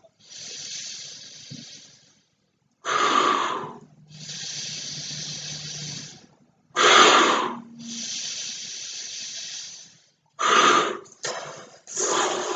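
A man inflating a large latex weather balloon by mouth: repeated cycles of a loud, short breath followed by a longer, quieter rush of air blown into the balloon, every three to four seconds.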